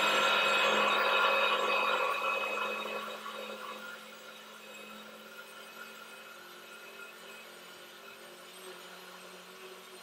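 NutriBullet blender grinding granulated sugar into powdered sugar: loud at first, then dropping to a much quieter, steady whir about three to four seconds in.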